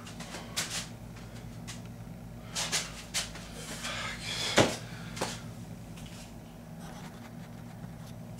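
Handling noise as a man shifts his grip on and works a wrapped steel bar: a few short knocks and rustles, the loudest a sharp thump about halfway through, over a steady low hum.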